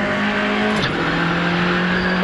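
Rally car's engine under hard acceleration at speed on tarmac, with a steady engine note whose revs dip once about a second in and then climb again.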